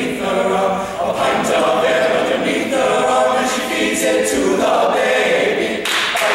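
All-male a cappella group singing a folk song in several-part harmony, unaccompanied, with a short sharp sound just before the end.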